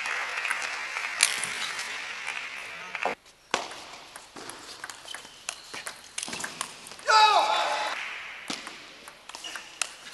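Crowd applause for about three seconds, cutting off abruptly. Then a table tennis rally, the celluloid ball clicking off bats and table. About seven seconds in comes a loud shout with falling pitch.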